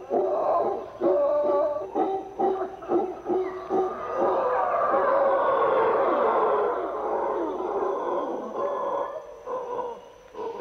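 A troop of mantled howler monkeys howling in chorus. Short repeated calls come about twice a second, then about four seconds in they swell into a dense, continuous roar of many voices that fades toward the end. The chorus is a troop's display of strength to neighbouring troops.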